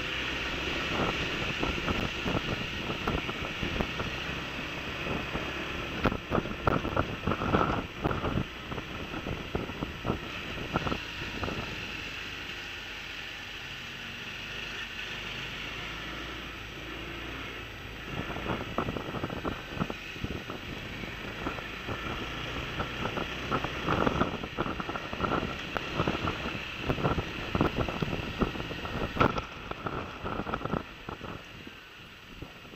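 Riding noise from a camera mounted on a moving scooter: wind rushing and buffeting against the microphone, with the rumble of the ride beneath. The buffeting eases off for a few seconds midway and picks up again.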